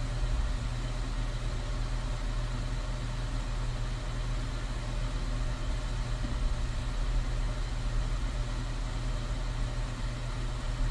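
Steady ambient background noise: a low, even rumble with a faint hum that does not change.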